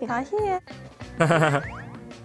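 Variety-show soundtrack: a young woman speaking Korean, then, a little over a second in, a short comic sound effect with pitches sliding upward, over background music.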